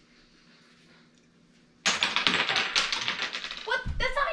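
A sudden clatter of small wooden game pieces on a tabletop: a dense run of rapid clicks lasting about two seconds, starting a little before halfway through.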